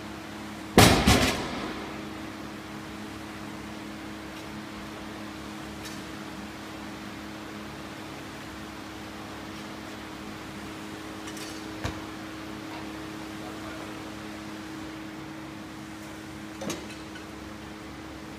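A barbell loaded to 455 lb with bumper plates dropped from a deadlift onto a rubber mat about a second in: one loud crash with a quick rebound just after. Underneath, a floor fan's steady hum, with a couple of faint knocks later on.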